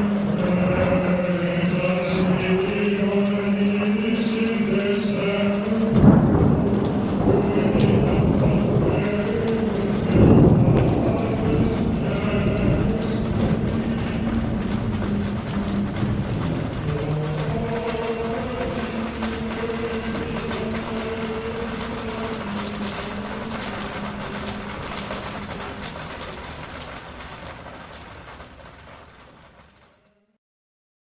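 Rain and thunder over held, sustained musical chords, with rolls of thunder about six and ten seconds in; everything fades out gradually over the last several seconds.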